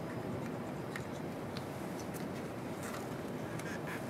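Quiet room tone with a few faint, light clicks and taps as the plastic test comb and plate are handled.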